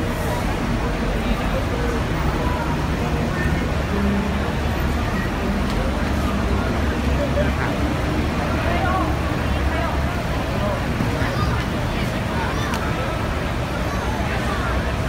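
Steady low rumble of idling buses and road traffic, with indistinct voices talking over it.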